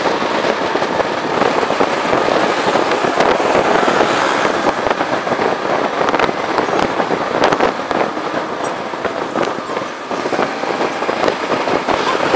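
Loud, crackling rush of wind and road noise from a moving motorcycle, picked up by a camera mounted on the bike, with irregular pops and crackles all through.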